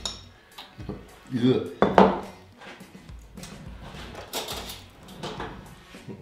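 Spoons and tins clinking and scraping against bowls and dishes, with a louder clatter about two seconds in.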